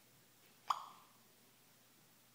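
A single short electronic blip from the Voice Actions voice-assistant app on an iPhone 4, a quick tone rising to a peak and fading away, about a second in. It is the app's sound cue as it takes in and handles a spoken request.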